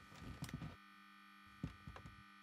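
Quiet room tone: a steady electrical hum, with a few faint, short soft sounds about half a second in and again near the end.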